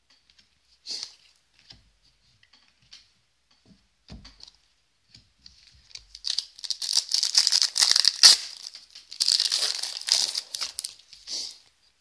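A foil-wrapped hockey card pack being handled and torn open: a few light clicks at first, then from about halfway through, long stretches of crinkling and tearing wrapper until just before the end.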